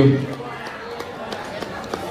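A man's voice finishes a word right at the start, then the murmur of a banquet crowd talking, with a few scattered light clicks.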